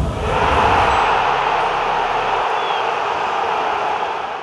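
Sound effect for an animated channel-logo sting: a deep low rumble dying away in the first second, under a loud, steady rushing noise that eases slightly near the end.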